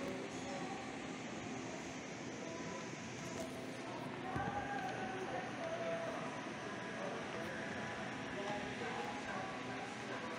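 Budgerigars chattering softly over a steady background hum, the chatter wavering more clearly from about four seconds in.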